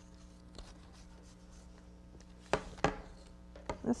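Flat reed being woven by hand through oak hoops, rubbing and scraping as it is pulled through, with two sharp clicks a little past halfway and a few lighter ones near the end. A faint steady hum lies underneath.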